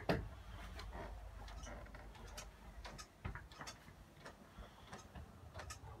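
Faint, irregular light clicks and taps, a few a second, over a low steady room hum, with one firmer knock a little past the middle.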